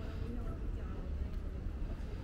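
Street ambience: faint, indistinct voices of passers-by over a steady low rumble.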